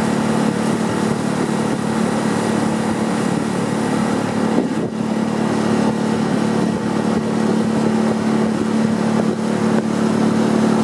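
Outboard motor of a rowing coach's launch running steadily at cruising speed, pacing the crew.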